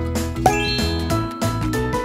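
A bright chime sound effect about half a second in: a sharp hit and then a quick rising run of ringing notes. Background music with a steady beat plays throughout.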